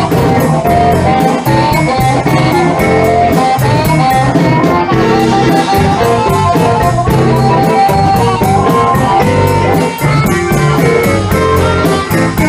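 Live electric blues band playing: electric guitars over bass, drums and piano, with an amplified harmonica, under a steady cymbal beat.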